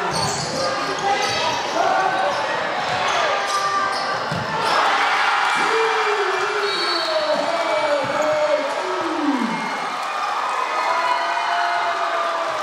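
Basketball game on a hardwood gym court: a ball bouncing, sneakers squeaking and players and spectators calling out over a steady crowd din.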